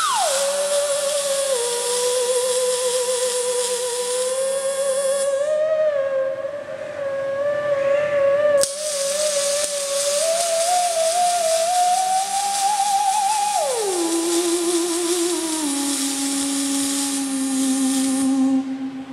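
Moog Etherwave theremin playing a slow improvised line with wide vibrato. It swoops down from a high note at the start, wavers in the middle range, climbs gradually, then slides down low near the end. Behind it is the hiss and crackle of robotic welding arcs, which drop out for a few seconds near the middle and come back with a sharp click.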